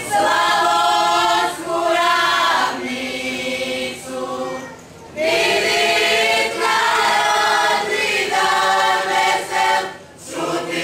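A mixed group of women's and men's voices singing a Croatian folk song together, unaccompanied, in long held phrases. There is a short break about five seconds in before the next phrase.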